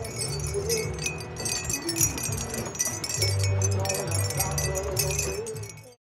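Wind chimes tinkling with many light, irregular rings, over a low hum. The sound cuts off just before the end.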